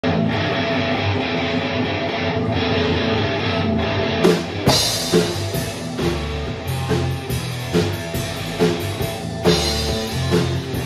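Live rock band playing an instrumental intro on electric guitars and bass guitar. About four seconds in, a drum kit comes in with a cymbal crash and then keeps a steady beat under the guitars.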